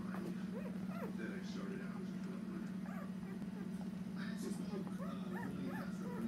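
Newborn puppies squeaking and whimpering in many short, high cries that rise and fall, over a steady low hum.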